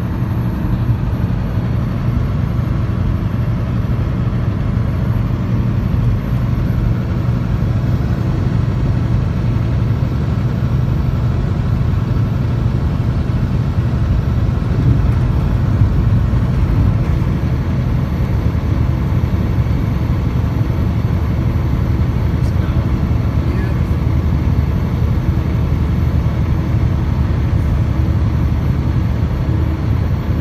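Steady drone of a semi truck's diesel engine and tyre and road noise heard inside the cab while cruising on the highway, a constant low hum with no changes.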